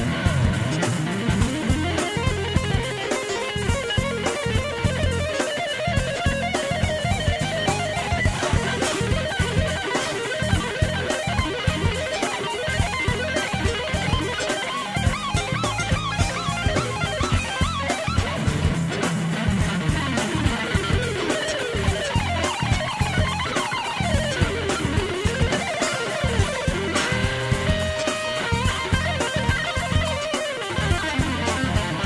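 Recorded fusion track with a very fast, shred-style electric guitar solo, a stream of rapid notes over bass guitar and drums.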